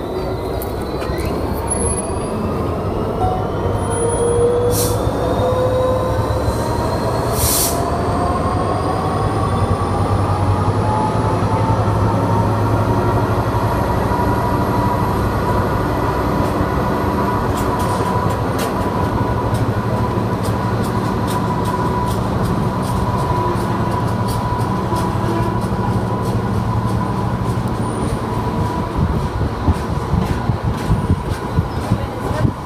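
Freight train of hopper wagons rolling past slowly, a steady rumble of wheels on rail. High wheel squeal runs over it: several thin squealing tones slide in pitch at first, then settle into one steady squeal from about halfway.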